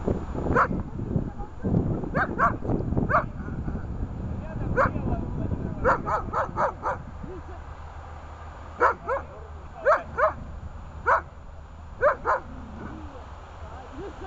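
A dog barking repeatedly: short, sharp barks in clusters of two to five, about seventeen in all, with pauses of a second or so between clusters.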